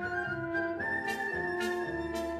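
Light orchestral music, a flute playing the melody over held notes.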